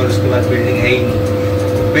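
Passenger lift running, heard from inside the car: a steady mechanical hum with a constant tone over it.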